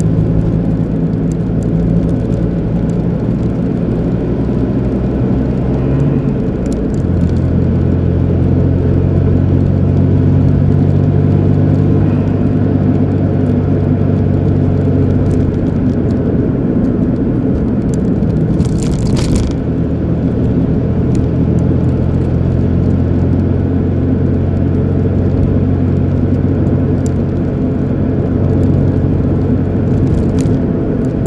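Car engine and tyre noise heard from inside the cabin while driving, a steady low drone. Its pitch shifts about seven seconds in, and a brief rushing sound comes about nineteen seconds in.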